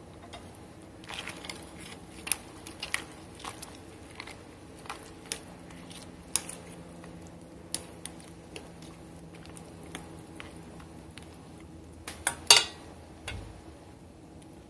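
Chopsticks clicking and scraping against a stainless steel pot as cabbage leaves are turned in water. The sharp clicks are scattered throughout, with a louder clatter of a few knocks about twelve seconds in.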